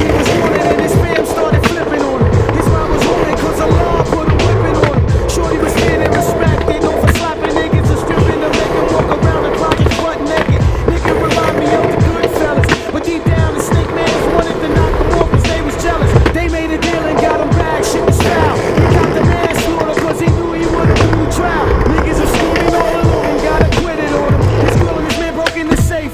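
Skateboard wheels rolling over rough pavement, with many sharp clacks and knocks as the board crosses cracks and bumps. A hip-hop track with a steady beat plays under it.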